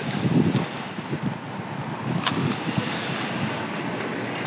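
Outdoor background noise: a steady low rumble of wind on the microphone, with a single faint click about two seconds in.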